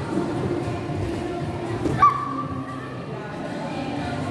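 Busy hall background of music and distant voices, with one short, loud, high-pitched squeal that rises quickly and holds for a moment about two seconds in.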